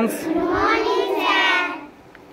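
A group of schoolchildren answering together in a drawn-out, sing-song chorus, the reply to a morning greeting from their teacher. It dies away shortly before the end.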